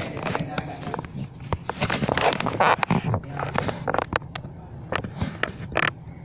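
Teenagers' voices talking and exclaiming in a classroom, mixed with a string of short sharp clicks and knocks, roughly two or three a second.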